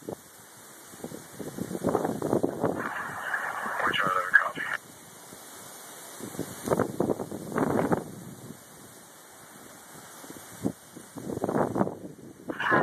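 Scanner radio carrying emergency-dispatch talk: three bursts of indistinct, narrow-sounding radio voices with short gaps between them.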